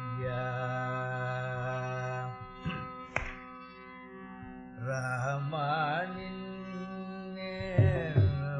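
Carnatic classical music in raga Simhendramadhyamam: a steady drone under melodic phrases, first a held note and then, about five seconds in, a phrase with quick oscillating gamakas. A couple of mridangam strokes come about three seconds in, and louder ones near the end.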